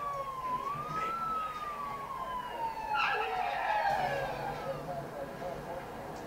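Movie soundtrack: a single high tone that dips, rises once about half a second in, then slides slowly downward over several seconds, over a faint low hum.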